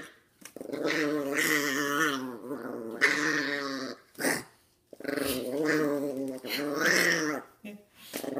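Chihuahua growling in several long bouts broken by short pauses, guarding the presents under the tree from a reaching hand.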